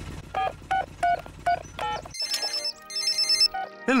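Cartoon mobile phone keypad beeping as a number is dialled, about seven short tones, over a low helicopter hum. Then, from about two seconds in, a phone rings with a high electronic trill that stops shortly before the end.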